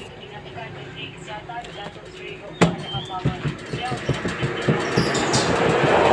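Roti canai dough being slapped and patted on an oiled metal table: one sharp slap about two and a half seconds in, then a run of softer thumps. A rush of noise builds toward the end.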